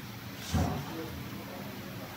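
A brief knock about half a second in as hands handle the wiring and plastic housing in an electric scooter's battery compartment, over a steady low workshop hum.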